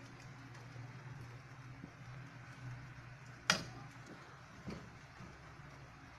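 Faint sounds of a silicone spatula stirring a thickened milk sauce in a saucepan, over a low steady hum. A sharp knock comes about three and a half seconds in, and a softer one about a second later.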